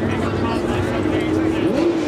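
Noisy street crowd of revellers over a steady low rumble, with one voice holding a single long call that bends in pitch near the end.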